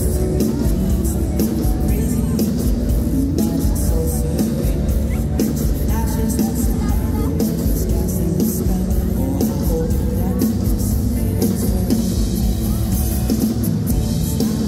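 Live band music played loud through a stage PA, with drums and pitched instruments.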